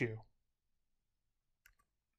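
A spoken word trails off, then near silence broken by a single faint click about one and a half seconds in.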